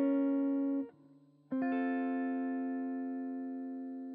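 Guitar chords closing out a song: a held chord stops about a second in, and after a short pause a final chord is struck and left to ring, fading slowly.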